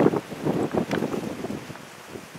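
Wind buffeting the microphone in irregular gusts that fade away over the couple of seconds.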